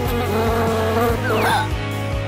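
Cartoon sound effect of a fly buzzing over background music, cut off about one and a half seconds in by a short falling whistle as the fly drops.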